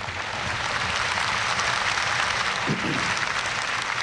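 Large audience applauding, many hands clapping in a dense, steady patter that builds up in the first second.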